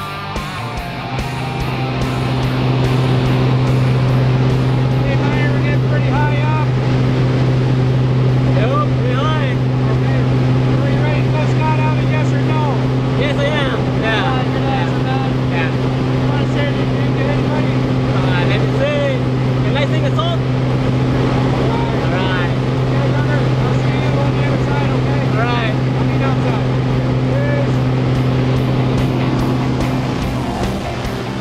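Single-engine, high-wing jump plane's piston engine and propeller droning steadily at climb power, heard from inside the cabin; the drone sets in about a second in and holds at one pitch.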